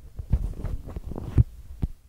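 Handling noise on the recording phone's microphone: irregular low thumps and rubbing as the device is moved about, with the sharpest knocks near the middle and shortly before the end.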